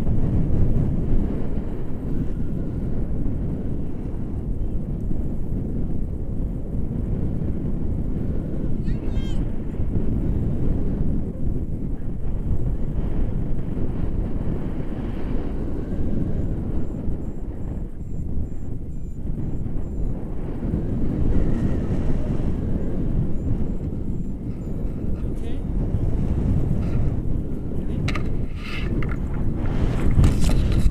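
Wind rushing over the camera microphone from a paraglider's airspeed in flight: a steady, loud low rumble of buffeting.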